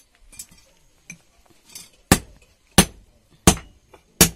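Blacksmith's hand hammer striking iron on a small anvil: a few light taps, then from about two seconds in three hard metallic blows, about 0.7 s apart.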